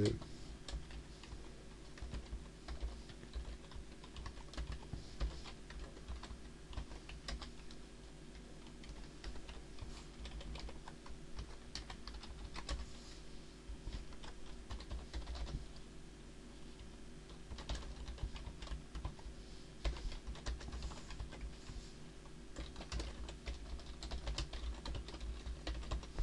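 Typing on a computer keyboard: irregular bursts of quiet key clicks as text is entered.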